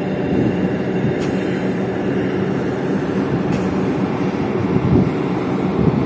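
Steady rumbling noise on the open deck of a moving LPG tanker: wind buffeting the microphone over a low, even hum from the ship's machinery.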